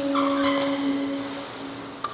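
Sneaker soles squeaking on the badminton court mat. One squeal is held for about a second and a half, a shorter, higher squeak comes just after it starts, and a brief high squeak comes near the end.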